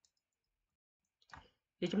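Near silence, broken by one short faint sound a little past the middle, then a voice starts speaking in Vietnamese near the end.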